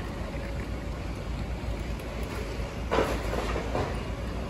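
High-reach demolition excavator working on a concrete building, with a steady low rumble. About three seconds in comes a clattering burst of about a second, typical of concrete breaking and debris falling.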